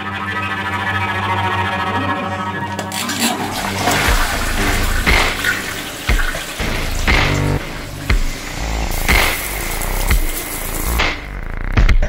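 Toilet cistern flushed with its push button on top, water rushing and swirling into the bowl, over background music.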